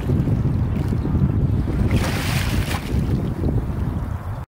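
Wind buffeting the microphone: a loud, rough low rumble that starts suddenly, with a brief hissing rush about two seconds in.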